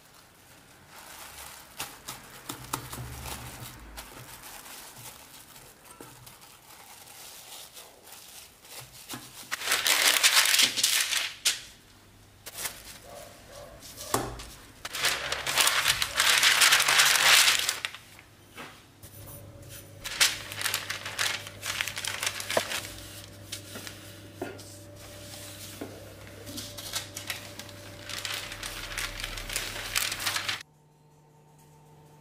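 Baking paper and plastic cling film crinkling as they are handled, loudest in two bursts about ten and sixteen seconds in, then quieter rubbing and light taps.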